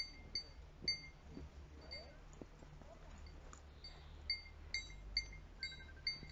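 Small goat bells tinkling faintly, a dozen or so short irregular clinks as the animal moves and grazes.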